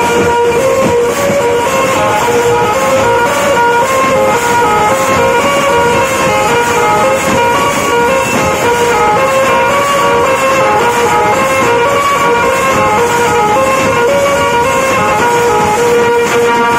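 Indian tasa party drum ensemble playing loud, fast, continuous tasha and dhol drumming with a steady metallic cymbal shimmer. A loud held melodic line runs over the drums, its notes stepping between pitches.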